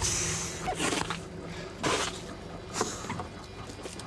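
Freshly landed Humboldt squid on a wet boat deck: a few sudden wet slaps and splatters about a second apart, over a steady low hum.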